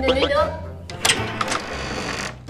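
A brief vocal sound at the start, then a few sharp clicks and knocks about a second in, over a low steady hum.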